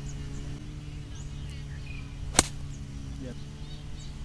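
A golf ball struck with a nine iron from the fairway: one sharp club-on-ball click about halfway through.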